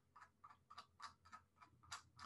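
Faint, irregular clicking of a computer mouse's scroll wheel, a dozen or so small ticks close to silence.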